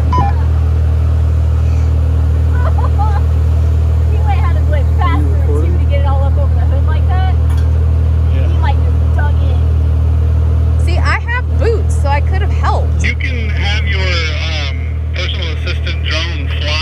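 Jeep engine idling steadily close by, a low even hum with no revving.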